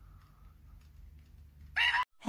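Faint low room hum, then near the end a woman's sudden loud, high-pitched shriek.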